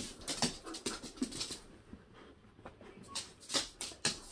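A dog's short, noisy breaths and faint whimpers, excited at being shown its ball; the sounds come thickly for the first second and a half, then thin out, with a couple more near the end.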